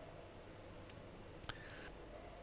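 A single computer mouse click about one and a half seconds in, over faint room tone.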